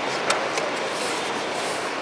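Steady street background noise, with a light click about a third of a second in as a chess piece is set down on a wooden board.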